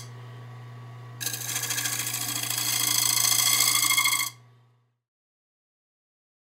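Wood lathe motor humming steadily while a bowl spins. About a second in, a gouge starts cutting the inside of the wooden bowl with a loud, ringing scrape; the cut stops abruptly about four seconds in, and the motor hum dies away just after.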